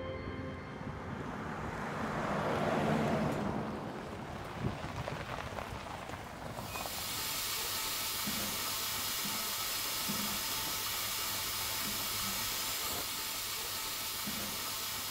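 Background music fades out at the start, and a rush of noise swells and dies away over the next few seconds. About seven seconds in, a steady hiss of goat milking-parlour machinery sets in suddenly and holds, with a few faint short sounds over it.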